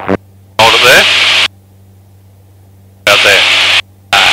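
Aircraft VHF radio transmissions in a pilot's headset: two short bursts of hissy speech, the first about half a second in and the second about three seconds in, each switching on and off abruptly, with a faint steady engine hum between them.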